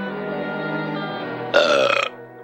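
Background music with long held notes, then about a second and a half in a loud, rough burp from a barfly that lasts about half a second.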